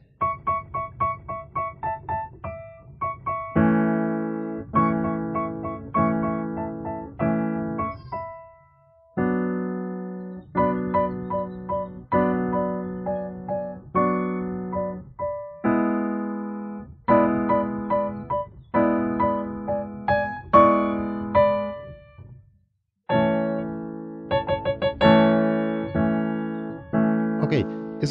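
Portable electronic keyboard played with both hands on its piano voice: struck chords and short runs of notes that ring and die away, with two brief pauses about nine and twenty-two seconds in.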